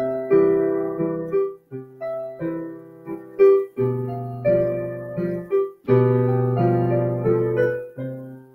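Digital piano playing a slow two-handed beginner piece, chords held with the damper pedal through each measure. The sound cuts off sharply each time the pedal is lifted, about every two seconds, before the next measure's chord sounds.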